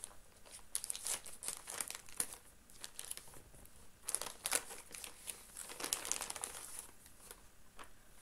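A small postal parcel being cut and pulled open by hand: its packaging crinkling and tearing in irregular quick crackles, busiest in two spells.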